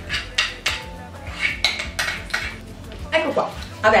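A quick run of clinks and scrapes of kitchenware on a ceramic mixing bowl as cake batter is scraped out of it into a baking tin. A woman starts speaking near the end.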